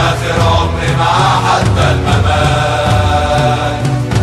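A group of Egyptian football ultras chanting together in Arabic over a steady, fast drum beat, in a recorded terrace-style fan chant.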